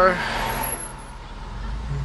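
Engine and road noise heard from inside a moving car's cabin, with a hiss over the first second and a low engine hum that grows louder in the second half.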